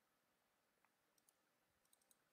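Near silence, with a few very faint ticks about a second in and again near the end.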